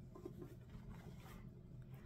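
Faint rustling of fabric and lace pages of a hand-stitched cloth book being handled, barely above room tone.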